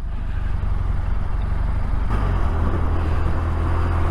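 Touring motorcycle engine running steadily underway, with wind and tyre noise on a wet road; about two seconds in the tone of the drone shifts and the hiss grows.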